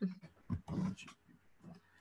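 Soft, brief laughter from a person: a few short breathy bursts.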